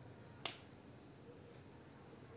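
Near silence with a single short, sharp click about half a second in.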